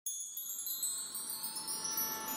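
Quiet, high-pitched tinkling chimes, many small strikes that ring on and overlap into a shimmering wash.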